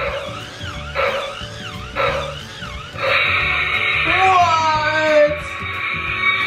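Electronic sound effects from a toy robot dinosaur's speaker, over a musical backing. A warbling tone repeats three times about once a second, then a louder, harsher sound with falling tones follows.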